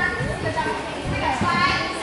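Several children's voices chattering over one another, with no words clear.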